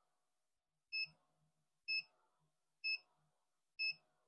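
Electronic beeper on a BGA rework station, sounding short, identical high beeps about once a second, four times, while the top heater runs during chip reflow.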